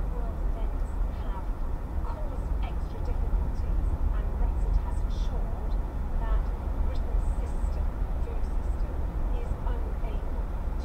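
Steady low rumble of car road and engine noise heard inside the cabin while driving at road speed, with faint indistinct voice-like sounds over it.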